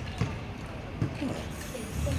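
Two short, dull knocks about a second apart, with faint voices in the background.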